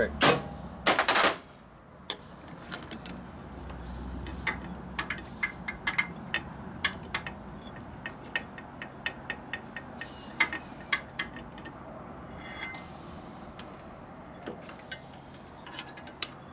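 Motorcycle clutch plates being fitted by hand onto the clutch studs and hub: two louder metal knocks at the start, then a run of light metallic clicks and clinks as the plates are worked into place.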